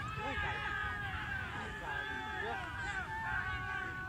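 Several voices talking and calling out at once, indistinct, from players and onlookers at an outdoor soccer match.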